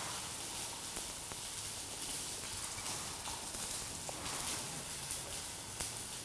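Faint steady hiss with a few light clicks.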